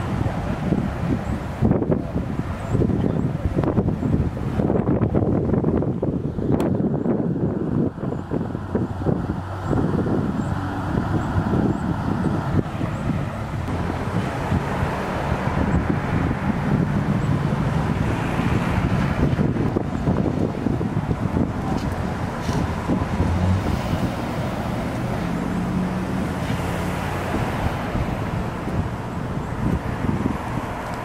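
Outdoor roadside noise: wind buffeting the microphone in gusts, strongest in the first third, over a steady low rumble of idling vehicles and passing traffic.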